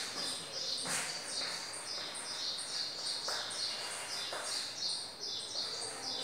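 A small bird chirping rapidly and repeatedly, about three short high chirps a second, with a few faint chalk strokes on a blackboard.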